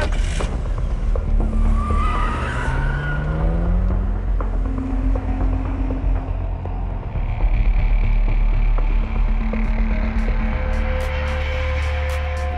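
A car engine revving up as it pulls away, with a brief tyre squeal, over a heavy low rumble of film score; sustained musical tones come in near the end.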